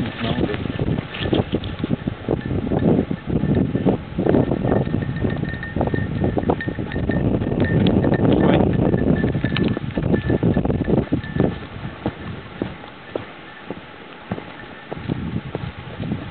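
Footsteps and rustling of a person walking through a field, an irregular run of soft thuds whose loudness rises and falls.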